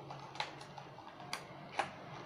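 Clear plastic phone-case box being handled and pried open, giving three short, sharp plastic clicks spread across about two seconds.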